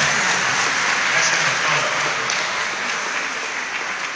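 A crowd applauding, a dense steady clapping that gradually dies down over the last couple of seconds.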